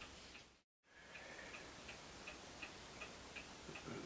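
Faint, regular ticking, about three ticks a second, over quiet room tone, broken near the start by a brief dead-silent gap.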